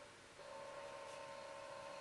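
A faint steady hum of a few held tones over low hiss, growing slightly louder about half a second in.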